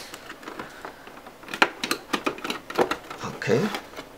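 A thin metal pry tool working into the seam of a plastic LCD monitor case, with a handful of sharp clicks as the plastic bezel clips are pried apart, mostly in the second half.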